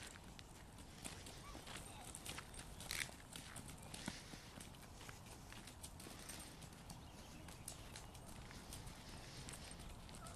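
Footsteps crunching on a gravel road, faint and irregular.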